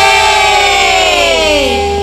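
A woman's voice holds one long high note that slides steadily down in pitch and fades, over a steady sustained tone and a low hum.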